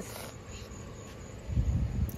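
Quiet outdoor background with no clear foreground sound, then a short low rumble on the microphone about a second and a half in.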